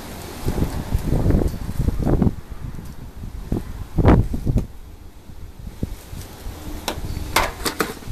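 Handling noises as butter is brushed from a small cup onto a roasted corn cob: irregular dull knocks and scrapes, with one heavier thump about four seconds in. Sharp metallic clatter near the end as a stainless-steel lid on the counter is moved.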